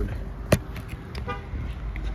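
A single sharp knock about half a second in, over a low steady rumble of outdoor traffic and wind.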